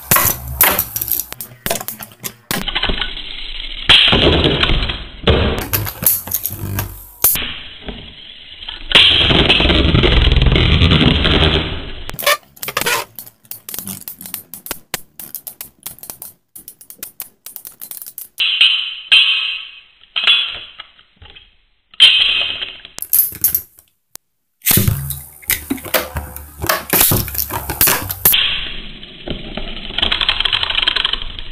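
Two metal-wheeled Beyblade spinning tops whirring and clashing in a plastic stadium: rapid clicks, knocks and rattles as they collide, with stretches of continuous grinding.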